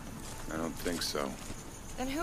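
A person's voice: a few short vocal sounds between about half a second and just past a second in, over faint background noise.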